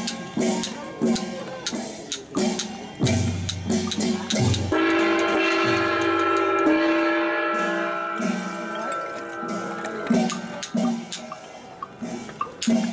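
Funeral music with percussion: sharp knocks and drum beats about twice a second, and a long held note in the middle, from about five to ten seconds in.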